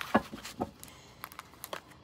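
A few faint, scattered clicks and flicks of playing-card-sized cards being handled as one card is drawn from a deck.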